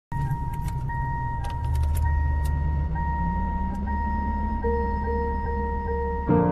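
Car sound effects opening a pop song: a low engine rumble and a thin electronic warning chime tone, with a few sharp key-like clicks and jingles in the first couple of seconds. A soft held note comes in about four and a half seconds in.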